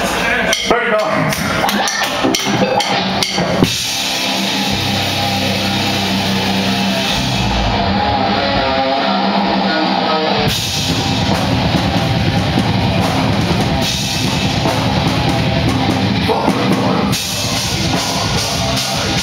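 Live heavy rock band playing loud distorted electric guitars, bass guitar and drum kit. Choppy hits in the first few seconds give way to a held, ringing stretch, and the full band comes back in about ten seconds in.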